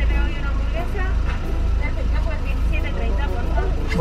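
Car engine idling, a steady low rumble, under voices talking.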